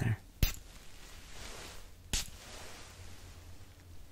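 A perfume atomizer bottle sprayed twice: two short sharp spritzes, about half a second in and about two seconds in, the first the louder.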